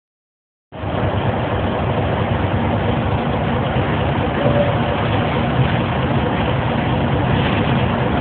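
A large vehicle's engine running steadily, starting about a second in.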